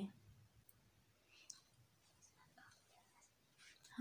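Near silence with a few faint, scattered clicks and soft rustling as a stack of bangles is turned in the hand.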